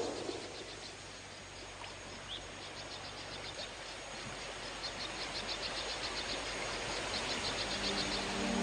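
Quiet outdoor nature ambience: a steady hiss with repeated trains of quick, high chirps. At the start, the tail of a loud gunshot dies away over about a second.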